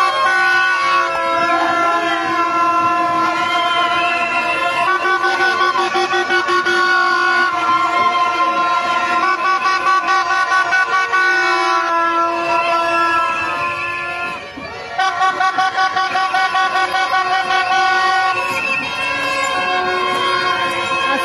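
Loud, sustained horn tones at several pitches at once, shifting to new pitches every few seconds over a pulsing beat, with a brief drop about fourteen seconds in.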